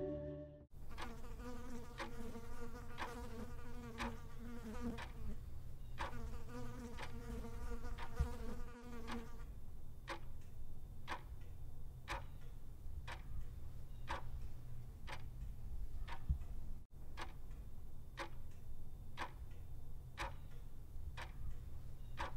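Regular ticking, about one tick a second at first and a little quicker in the second half. A buzzing drone like a fly runs under it for the first nine seconds or so, over a steady low hum.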